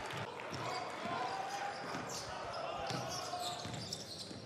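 Arena crowd murmur with a basketball bouncing on a hardwood court.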